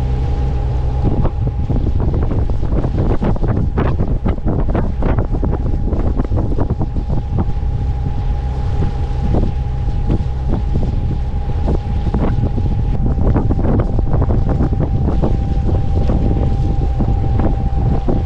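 Wind buffeting the microphone in gusts on a sailboat under engine power, over a low engine drone and a thin, steady high whine.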